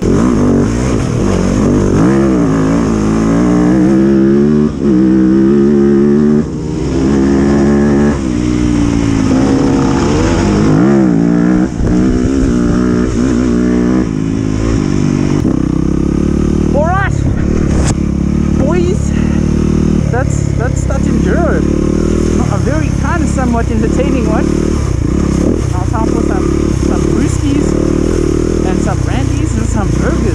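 Dirt bike engine revving up and down repeatedly as the bike is ridden and accelerated over a muddy field, the pitch rising and falling with each burst of throttle.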